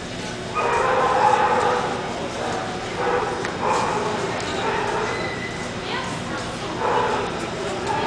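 A dog whining and yipping in a series of high, drawn-out cries that start about half a second in and recur through the rest, over the general murmur of a busy show hall.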